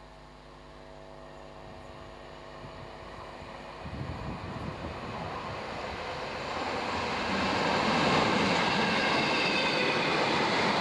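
An electric train approaching and passing close by. It starts faint, grows steadily louder from about four seconds in, and carries a high whine near the end as the vehicles go past.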